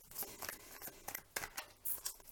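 A deck of tarot cards being shuffled by hand, the cards sliding and slapping against each other in a quick, irregular run of short swishes.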